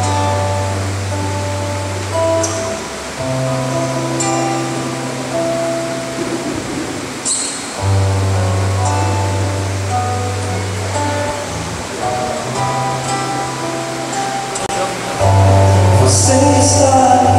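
Live instrumental music: a nylon-string acoustic-electric guitar playing chords over long held bass notes that change every few seconds.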